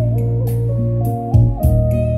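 Slow-tempo music with held notes and deep, steady bass, played through a pair of Cerwin-Vega XLS-215 floor-standing speakers with twin 15-inch woofers.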